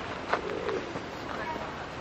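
Outdoor ambience with a bird cooing and faint voices, and a short sharp knock about a third of a second in.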